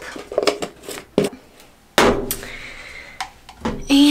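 Lid being screwed onto a jar of hair gel with a few light clicks, then a sharp knock about two seconds in as a container is set down, followed by about a second of handling noise and more small clicks.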